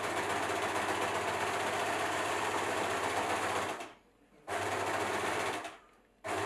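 Electric sewing machine stitching fabric: it runs steadily for almost four seconds, stops for about half a second, then runs again for about a second and a half before stopping.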